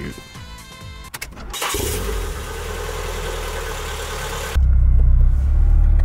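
Nissan 240SX being started: a few clicks of the ignition key, then the engine fires about two seconds in and runs at a steady idle. About four and a half seconds in, the low idle sound suddenly gets much louder and deeper. The car has an aftermarket exhaust.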